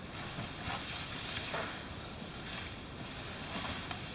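Faint scuffing and rustling of two people grappling on a mat, over a steady hiss.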